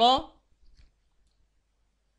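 A voice speaks briefly at the very start, then a few faint clicks of a computer mouse follow within the next second before the line goes quiet.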